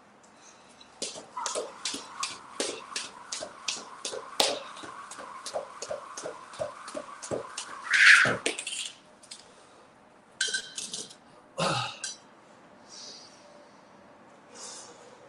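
Jump rope singles: the rope strikes the floor about three times a second for some seven seconds, over a steady hum. Then comes a louder short burst, and later a few more short sounds, one with a low thud.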